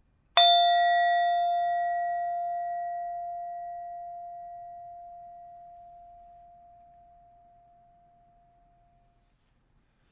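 A meditation bell struck once. It rings out with a clear tone and fades slowly over about nine seconds, marking the start of a guided meditation.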